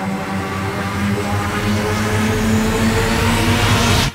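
Electronic intro music: a low held drone under a noisy riser that swells louder and brighter, then cuts off suddenly near the end.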